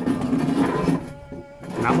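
A rough, drawn-out vocal sound with a steady pitch, ending about a second in, followed near the end by a short spoken word.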